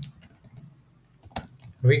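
Computer keyboard being typed on: a few scattered keystroke clicks, one louder than the rest a little past the middle.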